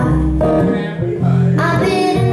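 A small live band playing: archtop guitar, acoustic guitar and electric guitar strummed and picked together, with low notes moving beneath, and a woman singing into the microphone.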